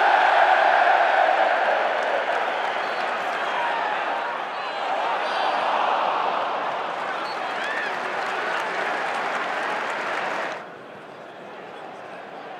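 Large football stadium crowd applauding and cheering a substitution: a dense mass of clapping and voices, loudest at the start and easing slowly, then dropping off sharply near the end.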